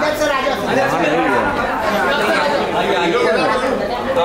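Overlapping chatter of several people talking at once, with no one voice clear.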